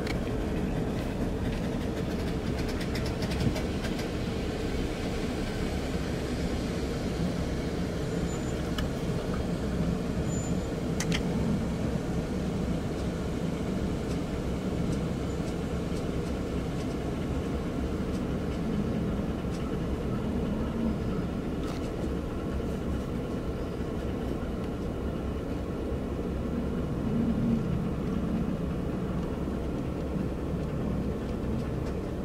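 Steady car engine and road noise heard from inside the cabin while driving slowly in a line of traffic.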